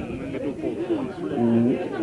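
Speech: people talking in conversation, with one drawn-out syllable about one and a half seconds in.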